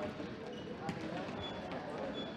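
Indoor soccer ball kicked and bouncing on a sports-hall floor, with a sharp strike about a second in, a few short high squeaks of sneakers on the court, and players' voices echoing in the hall.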